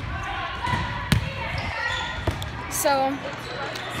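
Volleyballs being hit and bouncing in a large gym, with one sharp smack of a ball about a second in and a softer one a second later, over the chatter of players' voices.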